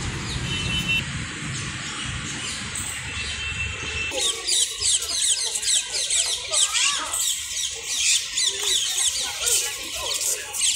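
A steady low rumble for about four seconds, then an abrupt change to a dense chorus of many birds chirping and squawking, with rapid high calls overlapping throughout.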